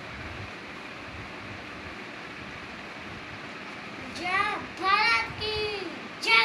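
A young child's voice calls out three short, high-pitched cries in the last two seconds, over a steady hiss that fills the first four seconds.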